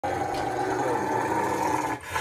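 A Rottweiler growling in one long, unbroken growl as its paw is rubbed dry with a towel, cutting off at the very end. The growl is put on: the owner says the dog loves being dried.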